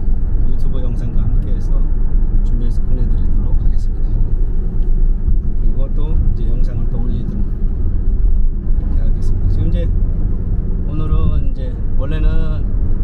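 Steady low rumble of a car's engine and tyres heard from inside the moving car, with a voice talking faintly at times over it.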